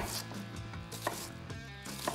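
Chef's knife dicing an onion on a cutting board: a few crisp knife strikes cutting through the onion onto the board, about a second apart.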